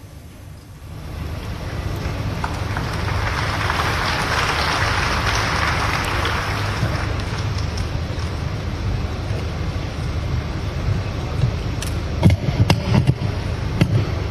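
Audience applause that builds over the first few seconds, peaks, then carries on more evenly over a low steady hum. A few sharp knocks come near the end.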